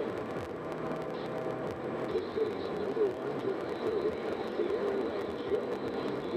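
Steady road and tyre noise inside a car cruising at highway speed.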